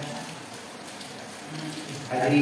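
A pause in a man's talk filled by a steady background hiss, with a short faint sound from his voice near the end.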